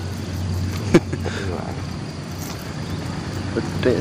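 A steady low hum with one sharp click about a second in and brief faint voices.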